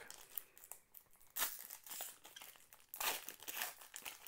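Foil wrapper of a Panini Mosaic football card pack being torn and peeled open by hand, crinkling in two spells: about a second and a half in, and again from about three seconds.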